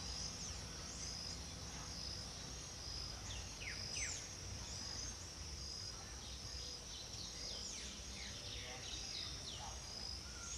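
Outdoor ambience of insects singing steadily at a high pitch, with a short pulse repeating about once a second. Small birds give quick falling chirps throughout, most thickly around four seconds in and again in the second half.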